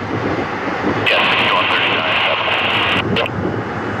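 Air traffic control radio: a pilot's short read-back comes through a burst of radio static hiss, which cuts in about a second in and cuts off sharply about a second later. Underneath runs the steady rushing noise of an airliner's jet engines.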